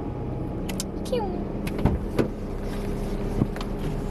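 Car engine idling steadily, with a few sharp knocks around the middle.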